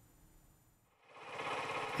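Near silence for about a second, then a small engine running steadily with a fast, even chug fades in: the motor of an engine-driven pesticide power sprayer.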